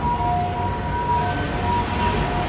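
Street traffic noise with a steady low rumble, and a high steady tone that sounds on and off.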